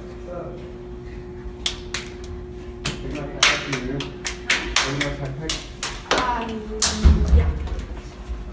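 Hands clapping and slapping together in an irregular run of sharp claps, the beats of a two-person patterned hand-clap handshake, starting about a second and a half in. Quiet voices sound between the claps.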